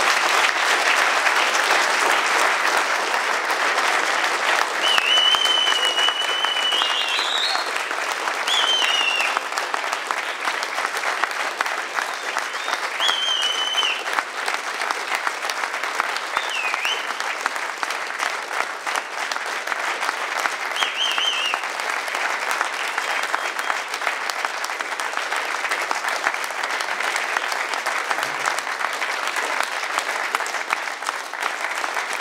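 Audience applauding steadily, with a few high whistles rising above the clapping in the first two-thirds.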